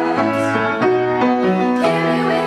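Piano accompaniment playing chords over a moving bass line, with a group of girls singing along.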